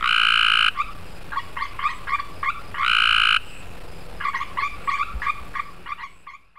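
Cope's gray tree frog (Hyla chrysoscelis) male giving its advertisement call: two loud, fast trills of about 50 pulses a second, each lasting well under a second and spaced about three seconds apart, with other frogs calling more faintly in the background.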